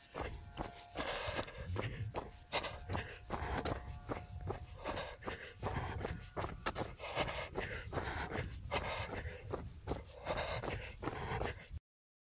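Running footsteps at a steady pace of about three strides a second, heard from a phone carried by the runner. The sound cuts off suddenly near the end.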